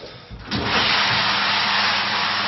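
Handheld shower head spraying water, a steady hiss that starts suddenly about half a second in.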